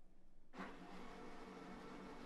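A faint, steady machine hum that starts abruptly about half a second in and holds at an even level.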